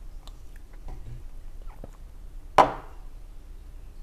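A person drinking from a small glass, with faint clicks of sipping and swallowing, then one short, loud exclamation about two and a half seconds in.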